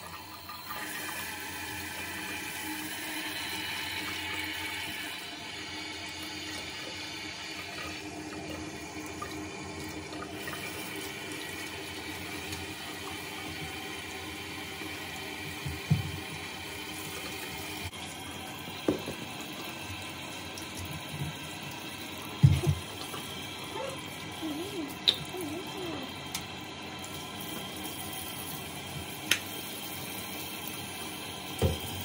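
Water running from a bathroom sink tap and splashing in the basin while a puppy is bathed, steady throughout and a little louder in the first few seconds. A few short knocks come in the second half.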